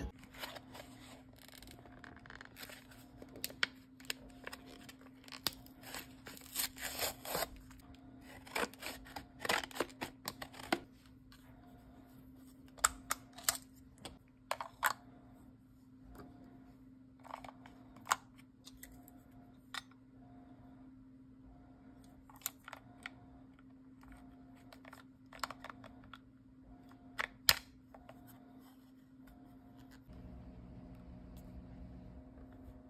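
Plastic packaging torn and crinkled open, then scattered sharp plastic clicks and taps as a small battery-powered X-Acto Zippi pencil sharpener is handled and its battery cover taken off and fitted.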